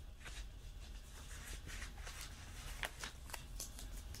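Faint rustling and light taps of paper as planner pages and sticker sheets are handled by hand, with a few sharper clicks in the second half.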